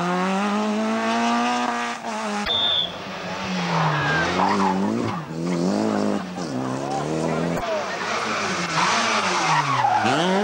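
Rally cars taking a tight tarmac corner one after another, three in turn. Each engine note drops as the car slows for the bend, then climbs hard as it accelerates out.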